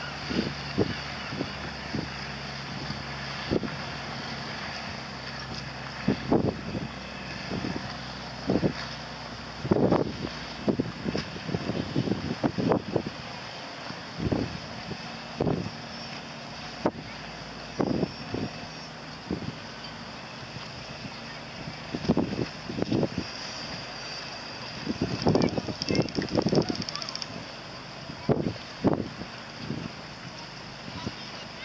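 Wind buffeting the microphone in repeated short gusts. Under it is a faint low steady hum, clearer in the first half, from the outboard motor of a rigid inflatable boat running slowly.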